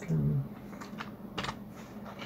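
A short voiced hum at the start, then a handful of separate keystrokes on a computer keyboard.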